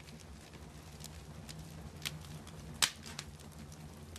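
Wood fire crackling: a handful of sharp pops and snaps at irregular intervals, the loudest near three seconds in, over a steady low hum.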